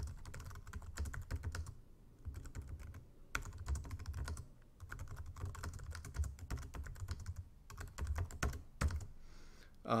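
Typing on a computer keyboard: quick runs of keystroke clicks broken by short pauses.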